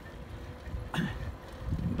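Low, steady wind rumble on the microphone of a phone carried on a moving bicycle, with a short voice sound about a second in.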